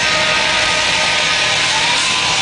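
Punk band playing live at full volume: distorted electric guitar and bass with drums and cymbals, in a dense, steady wall of sound.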